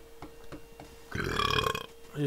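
A single burp, about three quarters of a second long, starting a little past a second in.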